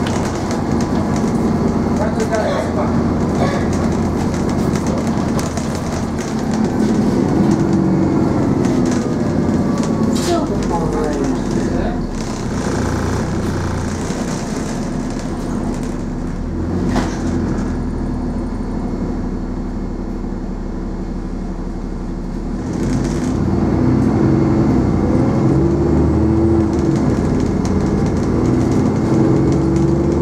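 Interior of an Alexander Dennis Enviro400 double-decker bus under way, heard from the lower deck: the engine and drivetrain run and change pitch with the driving. It is quieter through the middle stretch and pulls harder again from about two-thirds of the way in.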